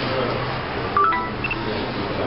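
Voices of people talking in a small room. About a second in comes a sudden click, then a brief cluster of short beeping tones at several pitches.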